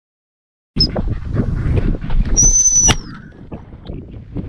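A gundog handler's whistle: one short, high, steady blast of about half a second, a signal to the working spaniels. Behind it, rough wind and walking noise on a head-mounted microphone starts abruptly a little way in.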